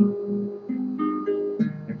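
Classical guitar played fingerstyle: a p-i-m-a arpeggio over a barre chord, single notes plucked one after another, about three a second, each ringing on under the next.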